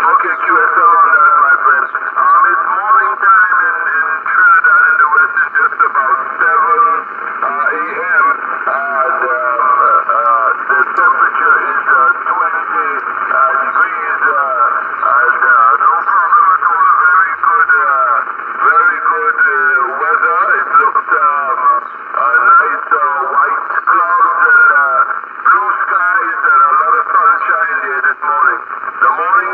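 A man's voice coming through the speaker of a Yaesu FT-840 HF transceiver as a received signal, talking steadily. It has the thin, narrow tone of shortwave radio, with no bass or treble.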